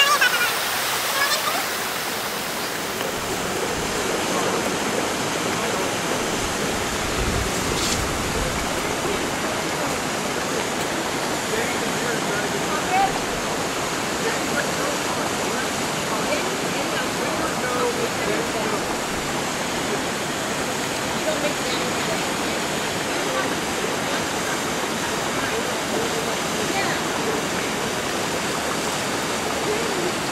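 Steady rushing of a waterfall pouring down rock slabs, an even white-noise wash with no change in level.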